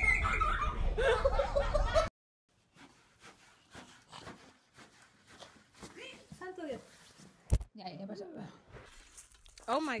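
Laughter and excited voices that cut off abruptly about two seconds in. Then quiet, with faint wavering vocal sounds and a single sharp knock.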